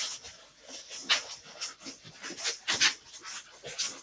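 Latex 260 modelling balloons squeaking and rubbing against each other in the hands: a series of short squeaks as a newly inflated balloon is pushed into the central twist joint.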